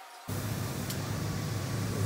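Automotive paint booth in use with a spray gun: a steady rush of air over a low hum, starting abruptly about a quarter second in.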